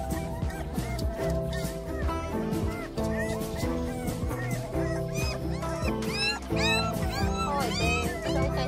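Background music with held chords, over which a wet puppy whines and yelps in short, high, arching cries, more often in the second half as it is rubbed dry in a cloth.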